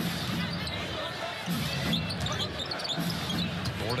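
Basketball-arena crowd noise with a basketball being dribbled on the hardwood court and short high squeaks of sneakers.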